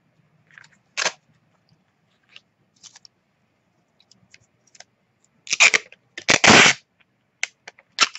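Clear tape being handled and torn: a short crinkle of tape about a second in, then near the end two loud rips as a length is pulled off the roll of a tape dispenser and cut on its blade, followed by a few light crinkles and clicks.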